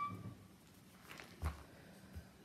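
A ring of metal keys clinking once, with a short ringing tone, then a soft knock about one and a half seconds in as things are handled on the table.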